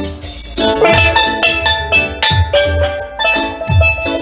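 Steelpan struck with a pair of sticks, playing a quick melody of bright, briefly ringing notes over a steady drum beat.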